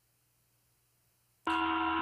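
Near silence, then about one and a half seconds in a call participant's open microphone cuts in abruptly with a steady electrical hum made of several pitches.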